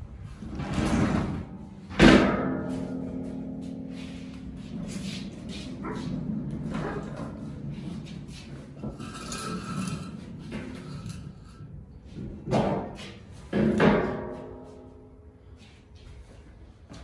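Heavy steel runway of a four-post car lift clanging as it is set down and knocked into place. A loud bang about two seconds in rings on for several seconds, and two more clangs with ringing come near the end.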